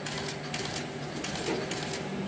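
Automatic notebook wire-pinning (stitching) machine running: a steady mechanical hum with repeated clicks from the stitching head and feed mechanism.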